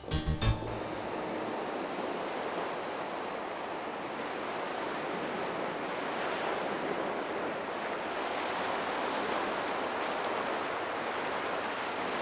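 Sea surf washing steadily onto a sandy beach, an even rush of breaking waves.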